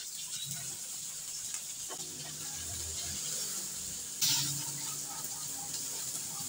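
Chopped tomatoes sizzling in hot oil in a wok with sautéed garlic and onion, a steady hiss that surges louder about four seconds in as the pan is stirred.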